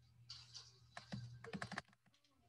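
Faint computer clicking, with a quick run of clicks about a second in, over a low hum that cuts off near the end.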